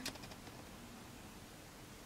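A few faint clicks of an eyeshadow brush against a powder eyeshadow palette as it picks up shadow, right at the start, then quiet room tone.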